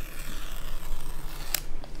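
Paper tear strip being pulled off a sealed Apple Watch box, a steady ripping rasp lasting the whole pull, with one sharp click about one and a half seconds in.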